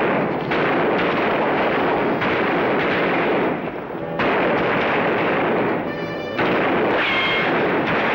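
Film sound effects of a western shootout: rapid revolver and rifle shots from several guns, overlapping into a nearly continuous loud barrage that drops back briefly a few times.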